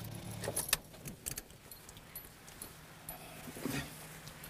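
Light metallic clicks and jingles inside a stationary car, bunched in the first second and a half and again briefly near the end, over a faint steady low hum.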